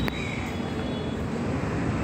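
Ceiling fans running, a steady low whirring rumble with no breaks.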